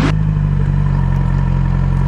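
2008 Yamaha YZF R6's inline-four engine running steadily at idle.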